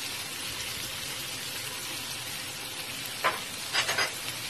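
Shrimp sizzling in butter and garlic in a hot pan, a steady frying hiss, with two short clicks near the end.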